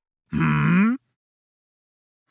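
A cartoon monster character's voice gives one short questioning grunt, rising in pitch, lasting under a second.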